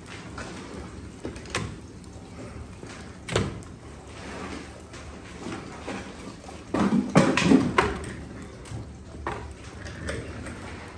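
Knocks and clanks of the maple syrup evaporator's firebox being worked: the door is handled and the fire restoked. There are single knocks a couple of times early on, then a louder run of clattering about seven seconds in.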